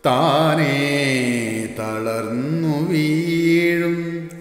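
A man singing a slow melodic phrase without accompaniment, sliding and wavering between notes, ending on a long held note.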